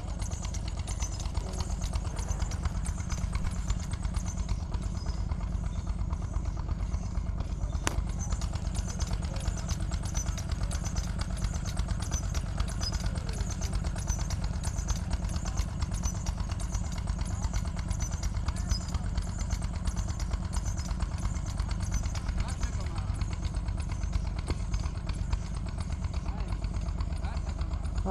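Steady low rumble of wind buffeting the microphone, with a faint high chirp repeating steadily behind it and a single click about eight seconds in.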